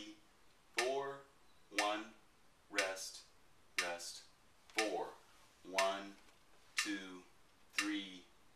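A man counting the beats of a rhythm exercise aloud, one count about every second in a steady pulse, each count opening with a sharp tick.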